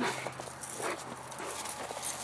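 Faint scuffling and rustling from the dog moving about excitedly close by.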